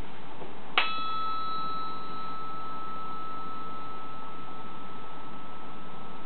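A brass bar struck once about a second in and left ringing: a sharp clang, then one clear pure tone near 1330 Hz that holds steady, with higher overtones dying away within a second. The steady tone is the bar's resonant frequency, which is read off the oscilloscope to work out the speed of sound in brass.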